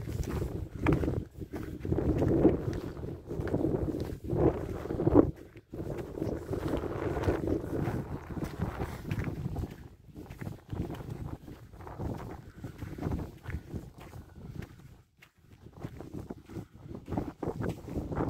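Wind buffeting the microphone in uneven gusts, with footsteps on a gravel track.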